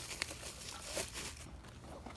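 Clear plastic wrapping crinkling and rustling as hands unwrap a plastic stemless cup, with a few light clicks.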